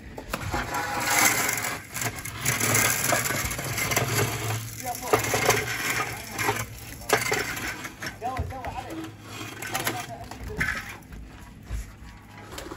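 A steel trowel and a long metal straightedge scraping over wet cement render on a wall: rough, irregular scraping with scattered knocks and clicks, and workers talking in the background.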